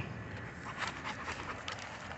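A dog panting faintly while out walking, a few short breaths heard.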